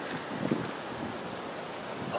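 Steady outdoor wind noise, an even hiss with a couple of faint taps.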